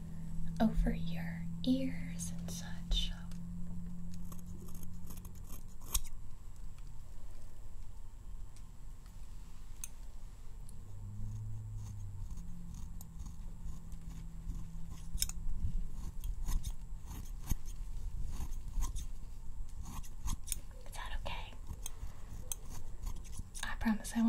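Haircutting scissors snipping close to the microphone, with crisp irregular snips coming in scattered clusters.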